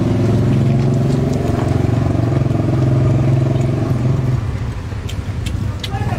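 An engine running steadily with a low, even hum, fading away about four seconds in. A few sharp clicks follow near the end.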